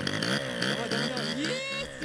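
Small scooter engine with no carburetor, running on deodorant sprayed straight into its intake, revving up and down unevenly as the scooter moves off.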